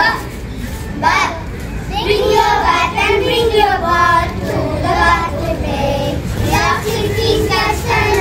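Young children singing a phonics alphabet song in short phrases, young voices throughout.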